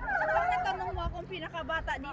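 Indistinct, high-pitched voices talking, their pitch wavering up and down in short broken phrases.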